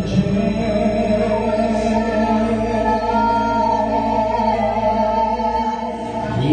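Live vocal performance: two singers singing into microphones over musical accompaniment, with long held notes.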